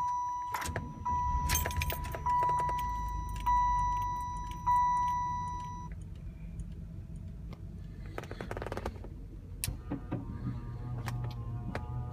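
1994 Buick Roadmaster's warning chime dings five times, about once a second, as the key is turned and the 5.7-litre LT1 V8 cranks, starts and settles into a steady idle, with keys jangling at the ignition. Near the end a motor hums steadily, likely the power antenna extending.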